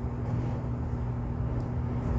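A steady low hum of background room noise with no distinct event; the greasing of the gears makes no clear sound.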